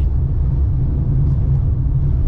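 Steady low rumble of a car driving on a dirt road, heard from inside the cabin with the windows up: engine and tyre noise.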